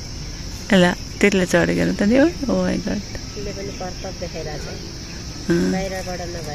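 Insects in the trees chirring, a steady high-pitched drone that runs without a break, with people's voices talking over it, loudest in the first couple of seconds and again near the end.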